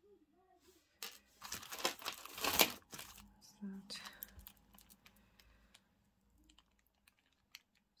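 Plastic bag crinkling and rustling as small jewellery pieces are handled. A burst of crinkling with sharp clicks comes about one to three seconds in, followed by quieter rustles and small clicks.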